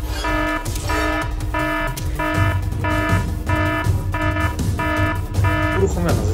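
Electronic alarm beeping: a buzzy pitched tone that repeats about three times every two seconds, over a low steady background drone.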